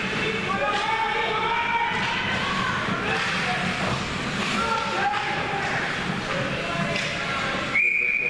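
Spectators' voices echoing in an indoor ice rink, with a few faint knocks from hockey sticks and puck. Near the end, a referee's whistle sounds one sudden, steady blast, signalling a stoppage in play.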